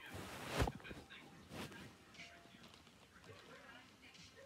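A short close rustle of hair and fabric against the microphone, then faint scattered rustling and small breathy vocal noises.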